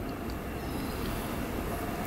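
Steady low background rumble, like room tone, with no distinct events.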